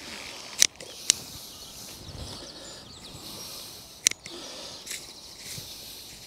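A knife cutting through leek stems and roots as they are trimmed, making short crisp snaps: two quick cuts about half a second apart near the start and another about four seconds in.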